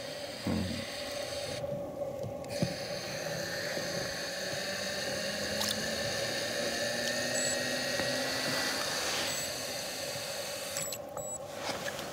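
Small electric wakasagi reel's motor winding in line with a steady whine, rising slightly in pitch and growing louder for about seven seconds before it stops, as a hooked pond smelt is reeled up.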